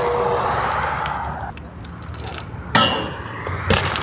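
A car passing on the road, then a BMX bike striking a metal flat rail and landing: two sharp knocks about a second apart near the end.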